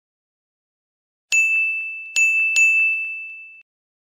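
Three bright bell-like dings on the same high pitch, the first alone and the last two close together, each ringing on and fading, as a logo chime sound effect. The ringing cuts off suddenly before the end.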